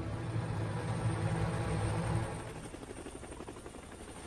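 Helicopter rotor and engine noise: a low rumble with a fast, even chop, swelling over the first couple of seconds and then easing off.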